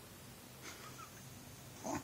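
A seven-week-old baby making faint breathy sounds, then a short coo near the end.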